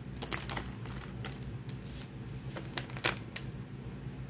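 Light clicks and clinks of small hard objects being handled on a table, about a dozen in all, the loudest about three seconds in, over a steady low hum.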